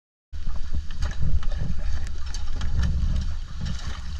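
After a brief moment of silence, wind rumbles on the microphone over open water, with small clicks and knocks from gear and water around an inflatable dinghy.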